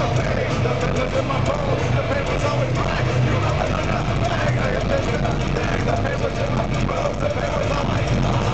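Concert crowd shouting and cheering, with voices blurred together, over a steady low hum from the stage sound system between songs.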